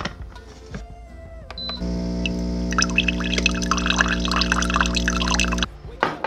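Single-serve pod coffee maker brewing: a steady pump hum starts about two seconds in, with coffee pouring and sputtering into the mug, and cuts off suddenly near the end.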